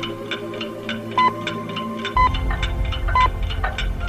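Speaking-clock time signal: three short, high, steady pips one second apart, the third marking twelve o'clock exactly, over a steady fast ticking. A low hum comes in with the second pip.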